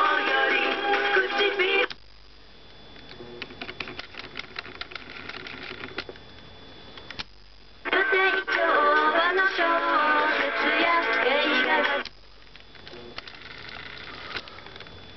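Sony TC-40 Tapecorder playing back music with singing from a cassette through its small built-in speaker. The playback stops suddenly about two seconds in and again near the end, leaving faint hiss and scattered light mechanical clicks, and it resumes loudly in between.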